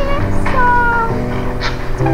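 Music from a song: steady held chords, with a high melodic line that slides down in pitch about halfway through.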